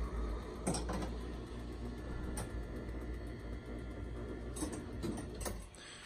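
Motor-driven mechanism of a 1934 Exhibit Supply Novelty Merchantman coin-operated crane running through its play cycle: a steady low hum of gearing with a few sharp clicks, cutting off shortly before the end.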